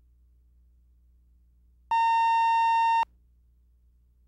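A single steady electronic beep, mid-pitched and lasting about a second, starts about two seconds in and cuts off sharply. It is a line-up tone on the videotape leader before the programme, with a faint low hum underneath.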